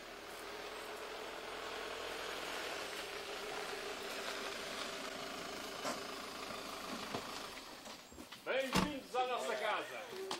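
A car's engine and tyres on a gravel drive, a steady sound for about eight seconds with one sharp click near six seconds in. Several people's voices break out loudly near the end.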